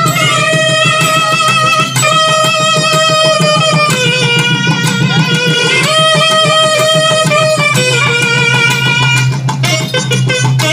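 A naiyandi melam band playing: nadaswaram double-reed pipes carry the melody in long held notes that move to a new pitch about every two seconds, over a steady low drone and thavil drum beats.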